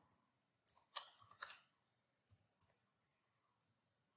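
Computer keyboard keystrokes, faint: a quick run of about half a dozen key clicks about a second in, then two lighter clicks a little later, as text is entered into a field.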